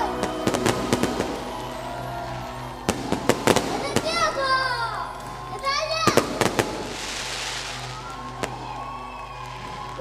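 Fireworks going off, with clusters of sharp bangs and crackles about three seconds in and again about six seconds in, with voices and music underneath.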